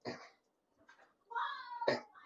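Felt-tip marker on a whiteboard: a scratchy stroke at the start, then a short falling squeak of the tip dragging on the board in the second half, ending in another sharp stroke.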